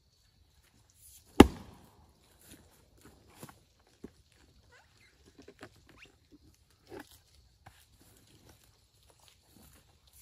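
Firewood being handled at a chopping block: one loud, sharp wooden knock about a second and a half in, then scattered softer knocks, thuds and rustles of steps in leaves as a round of oak is set up on the block.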